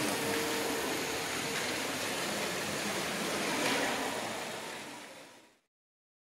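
Steady rushing hiss of a show cave's ambience, which fades out to silence about five and a half seconds in.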